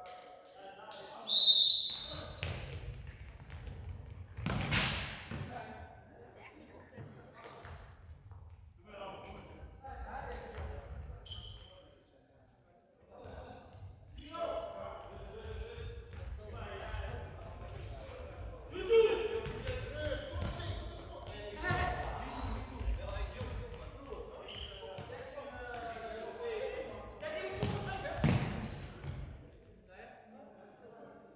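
Futsal ball being kicked and bouncing on a sports hall floor, echoing in the large hall, amid players' shouts. A loud, brief high-pitched tone comes about a second and a half in, and there is a short lull near the middle.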